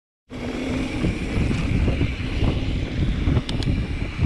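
Giant Reign mountain bike rolling along a dirt trail: a steady low rumble of tyres on dirt and wind on the microphone, with two sharp clicks shortly before the end.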